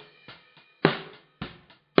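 Recorded snare drum track from a close snare microphone, played back with kick drum bleeding through: sharp, hard snare hits about a second apart, with a softer hit between them. The track runs through the Oxford Dynamics plug-in with its limiter lightly limiting to keep the output from overloading.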